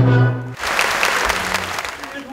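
An orchestra and chorus hold a final chord that cuts off about half a second in, and audience applause follows.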